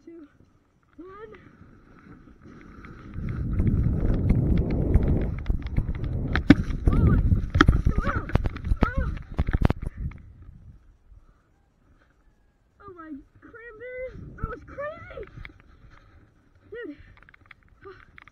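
A sled sliding fast down a snowy slope: a rush and scrape of runners over snow that builds about three seconds in, with sharp knocks as it runs over bumps, and stops about ten seconds in.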